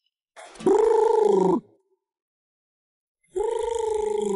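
Telephone ringback tone heard twice, each ring a steady pulsing tone lasting a little over a second with about two seconds of silence between: the call is ringing at the other end before it is answered.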